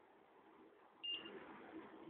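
A single short, high electronic beep about a second in from the automatic transformer test system, sounding as the test completes with a PASS result.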